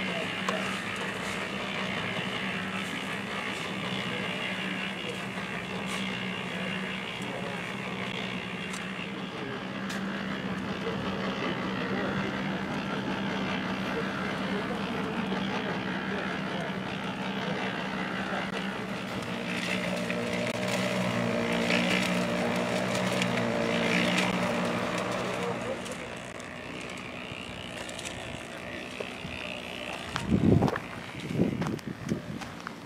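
An engine running steadily with a constant hum. It grows louder for several seconds about two-thirds of the way through, then drops back near the end.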